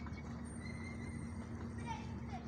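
Steady low drone of a diesel engine running continuously, heard across the water from a sand-dredging barge.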